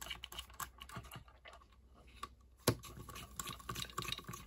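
Small T8 Torx screwdriver turning screws into a router's plastic fan housing, lightly snugging them down: a scatter of light clicks and ticks from the bit, screws and handled parts, with one sharper click about two and a half seconds in.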